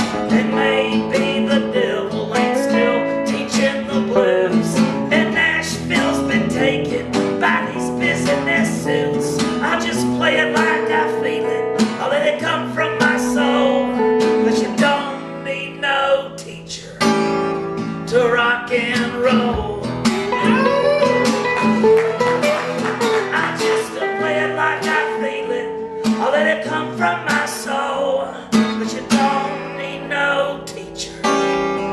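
Live acoustic guitar strumming with an electric guitar playing lead lines over it, an instrumental stretch of a country-blues song, dipping briefly in loudness just past halfway before carrying on.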